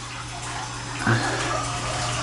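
Steady rushing background noise over a low, even hum, with a short voice sound about a second in.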